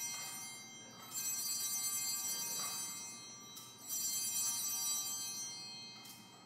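Altar bells, a cluster of small sanctus bells, shaken at the elevation of the chalice: the ring from a first shake is fading at the start, then two more shakes follow about one and four seconds in, each ringing bright and high before dying away.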